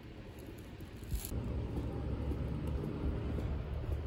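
A faint plastic-bag rustle, then about a second in the sound changes abruptly to a steady low outdoor rumble.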